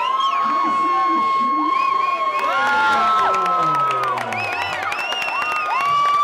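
Crowd cheering a cage-fight win, with several long, held high-pitched yells overlapping, one lasting about four seconds.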